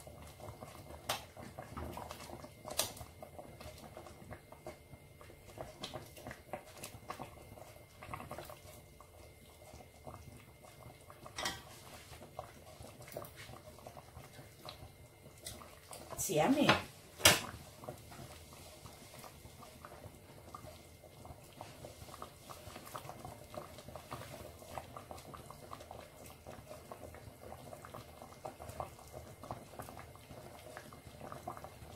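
Stockpot of broth simmering, a low steady bubbling with scattered small pops and clicks. About halfway through comes a brief louder sound of under two seconds, ending in a sharp click.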